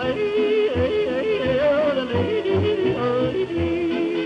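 A male singer yodelling a wavering, note-stepping melody over a hot jazz band accompaniment with a regular bass beat. It is heard from a badly worn 1931 Edison Bell Radio 78 rpm record played through a 1930s electric gramophone soundbox, with surface noise under the music.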